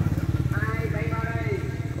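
An engine idling with a steady low rumble. A drawn-out voice sounds over it for about a second in the middle.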